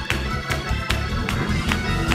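Fast gospel praise-break music: a drum kit beating a quick steady rhythm, about two to three hits a second, over a heavy bass and keyboard chords.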